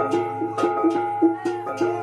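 Traditional Rungus gong ensemble playing: a quick, even beat of strokes on tuned gongs, their notes ringing on over a steady low hum.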